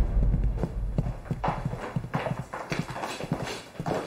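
Footsteps of two people in hard-soled shoes walking on a hard polished floor: a steady, slightly irregular run of sharp clicks, several a second. A low rumble fades out in the first second.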